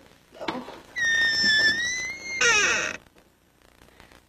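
A film sound effect: a high, whistle-like tone held about a second and a half with a slight waver, cut off by a short burst of rapidly falling tones, after a brief vocal sound at the start.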